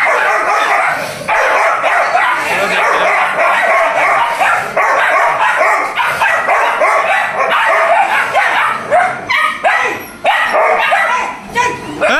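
Two pit bull puppies play-fighting, yipping and barking almost without pause in quick, high-pitched yelps.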